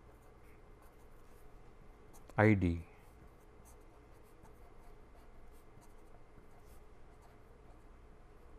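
Marker pen writing on paper, a faint run of short scratchy strokes as words are written out.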